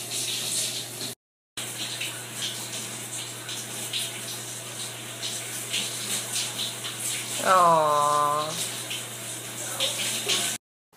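Shower spray running steadily onto people in a shower stall, with a short dropout a little over a second in. Near the end a low voice holds one note for about a second.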